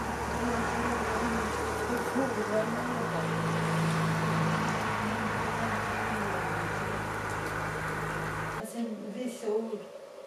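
A steady low mechanical hum with a wash of noise, holding several fixed low tones, that cuts off abruptly near the end.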